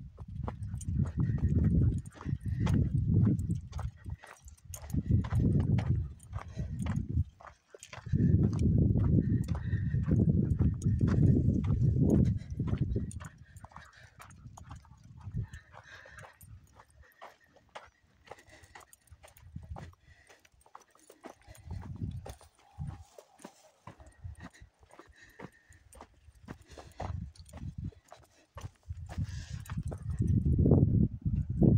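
Footsteps crunching along a dry dirt trail, a steady run of short steps. Loud low rumbling gusts, wind buffeting the microphone, swell over the first dozen seconds and come back at the end.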